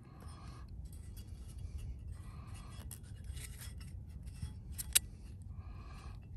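Faint handling noise from a steel axe head being turned over in the hand: a few short rustling scrapes and one sharp click just before five seconds in, over a low rumble of wind on the microphone.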